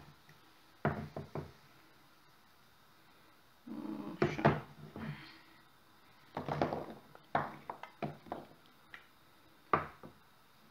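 Metal clicks and knocks from a hinged, long-handled metal tartlet mould being opened and tapped on a wooden board, with the baked pastry cups dropping out onto the board. The knocks come in several short clusters with quiet gaps between them.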